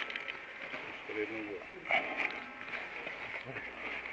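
A short, low voice sound from a man about a second in, with a few soft knocks and handling noise, over a steady hiss.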